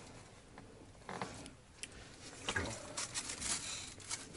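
Faint rustling with a few light clicks and scrapes: people shifting and handling small things and clothing. The sounds are scattered, growing a little busier in the second half.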